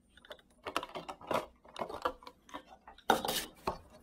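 Thin clear plastic bottle, cut open with holes in its sides, crackling and clicking as it is handled with a gloved hand: a run of irregular light clicks, with the loudest clatter about three seconds in as it is set down on a wooden table.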